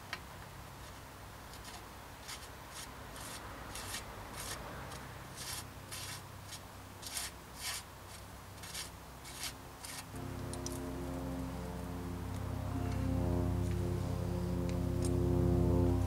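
Bottom bracket cup being turned by hand into the threaded steel bottom bracket shell, metal threads giving a series of short, irregular scrapes, roughly one or two a second. Background music comes in about ten seconds in and grows louder.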